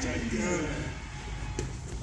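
A man's voice trailing off at the start, then quieter room noise with one soft knock about one and a half seconds in.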